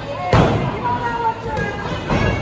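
A single loud slam on the wrestling ring's mat about a third of a second in, with voices calling out around it.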